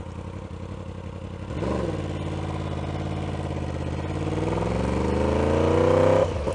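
2016 Yamaha R1's inline-four engine, fitted with a custom exhaust, idling, a quick blip about a second and a half in, then pulling away with the engine pitch rising steadily as it accelerates.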